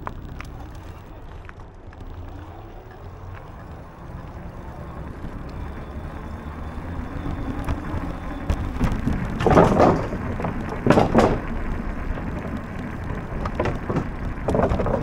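Bicycle riding noise: a steady low rumble of tyres and wind on the microphone that grows louder in the second half. Two loud rattling bursts come near the end, about ten and eleven seconds in.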